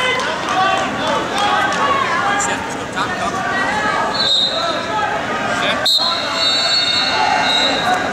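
Voices of coaches and spectators calling out in a large gymnasium during a wrestling bout, with a high steady tone sounding twice in the second half.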